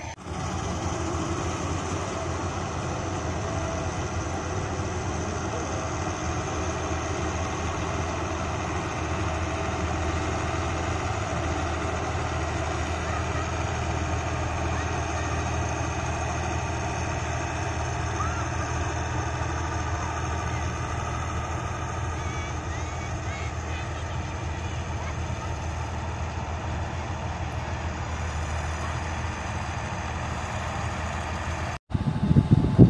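Combine harvester running steadily as it cuts and threshes rice paddy, a continuous low engine drone with machinery noise over it.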